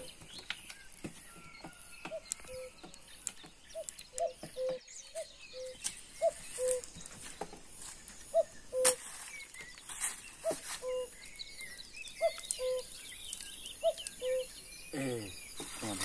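Cuckoo calling its two-note "cu-coo", a higher note dropping to a lower one, repeated over and over about once a second.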